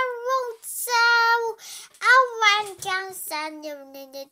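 A young child singing wordless, held notes in three short phrases, the last dropping to a lower sustained note near the end.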